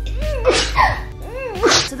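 A woman's short non-word exclamations and squeals, with pitch rising and falling, and music playing underneath.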